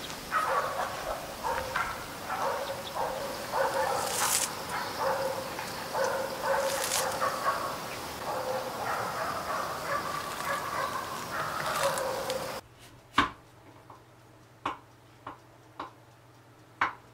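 An animal calling over and over, with a few sharp rustles. About three-quarters through, it cuts suddenly to a quiet room with a few sharp clicks.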